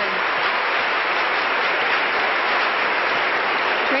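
Arena crowd applauding steadily after a gymnastics vault.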